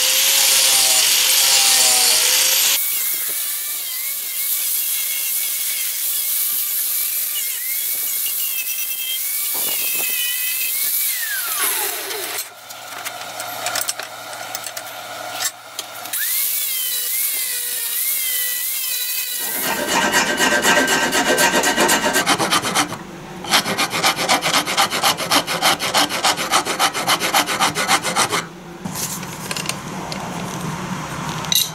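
Angle grinder with a flap disc sanding and shaping wood; the motor's pitch wavers as it bears on the wood, and about ten seconds in the pitch falls away as it winds down. Later a louder, coarser grinding with a fast, even pulse runs for several seconds.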